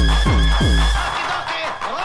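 Early-1990s hardcore techno: a fast, pounding kick drum about four beats a second under a sustained, wavering high synth tone. About halfway through, the kick drops out for a break, leaving the synth and a sliding pitch sweep.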